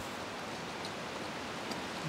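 Steady rush of flowing river water, an even hiss with no rhythm.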